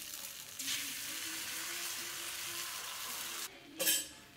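Batter sizzling as it is poured onto a hot non-stick frying pan: a loud, steady hiss that starts about half a second in and cuts off abruptly near the end, followed by a brief louder burst.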